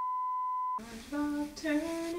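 A pure steady electronic beep tone for under a second, cutting off abruptly, followed by a voice humming a short wavering tune.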